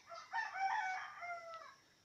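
A rooster crowing once, faintly, the call lasting about a second and a half.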